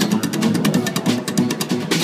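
Acoustic string band playing an instrumental passage: upright bass walking under strummed acoustic and electric guitars, with a quick, even beat of strokes.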